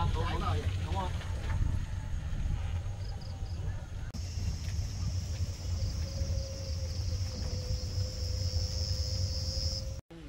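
Riding in an open buggy along a road through rice fields: a steady low rumble of wind and motion, with a steady high chirring of insects from the fields joining in about four seconds in.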